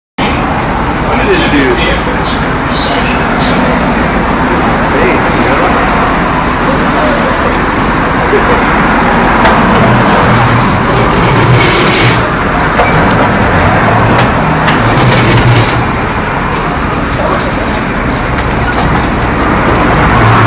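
Steady, loud traffic noise at an airport arrivals curb, with indistinct voices mixed in and a brief cluster of sharp clicks about halfway through.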